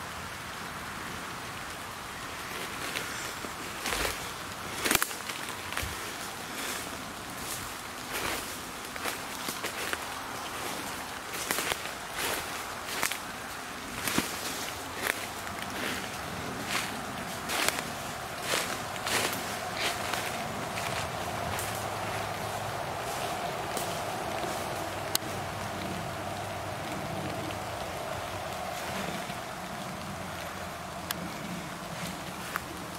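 Footsteps crunching through dry leaf litter and twigs on a forest floor, roughly a step or two a second. A faint steady drone comes in over the last third.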